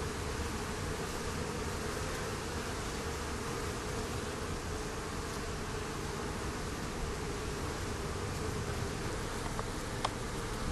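Honeybees buzzing: a steady, unbroken hum of wingbeats.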